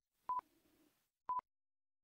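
Countdown timer sound effect: short, single-pitched beeps, one each second, twice.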